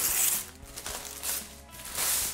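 Gift-wrapping paper being ripped and crumpled off a cardboard box: a loud rip right at the start, another short crinkle about a second in and more as it ends. Faint background music runs underneath.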